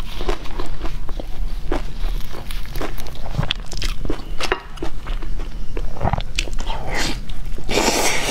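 Close-miked eating of a pizza slice: chewing with many small wet clicks and crackles, then a louder bite into the slice at the very end.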